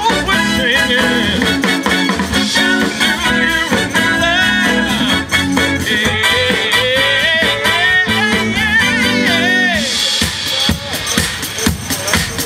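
Live band playing an R&B/soul-style song with a lead singer over electric guitar, keyboards and a drum kit. About ten seconds in, the vocal melody and held chords drop out, leaving mainly the drum beat.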